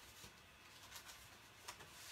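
Near silence, with a few faint, brief rustles of paper and card pieces being handled and shuffled.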